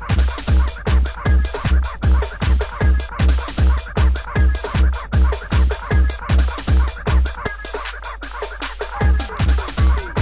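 90s acid tekno played from vinyl: a fast, steady kick drum about two and a half beats a second under busy high percussion and acid synth lines. Near the end the kick drops out for about a second and a half, then comes back in.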